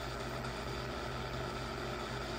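Spirit-box app on a phone scanning FM and AM radio channels, playing a steady low hiss with a hum underneath through the phone's speaker.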